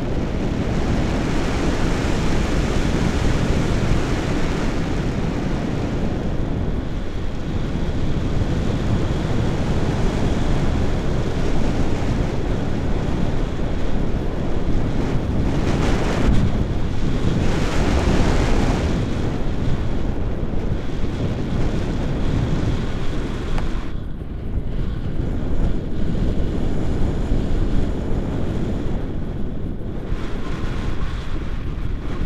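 Wind rushing over a camera microphone in paraglider flight: a steady, loud buffeting rumble, with stronger gusts about halfway through and a brief lull later on.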